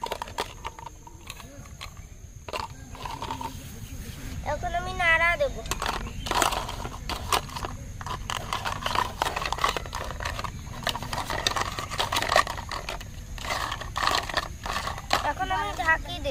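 Small clinks and taps of miniature toy cookware as a toy spoon stirs and scrapes in a little pot and utensils are set down. A chicken calls about five seconds in and again near the end.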